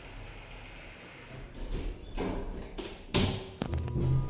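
Kone EcoSpace elevator doors sliding shut under the held door-close button, ending in a thud about three seconds in. A faint steady hum starts just after.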